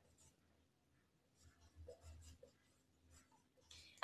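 Faint scratching of a whiteboard marker writing a word, in a few short strokes around the middle.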